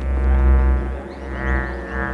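Electronic music: a buzzing synth drone with many overtones over a deep bass swell, with no beat, and a brighter tone swelling up about a second and a half in.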